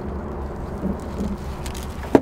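Steady low rumble of wind on the microphone over an open river, with faint rustles and small clicks from handling a digital hand scale and a plastic bag.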